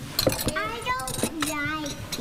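A young child's voice, high-pitched and wavering, speaking without clear words, with a couple of light dish clinks near the start.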